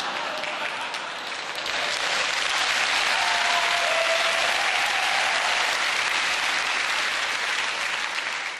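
A large theatre audience applauding, a steady sustained round of clapping.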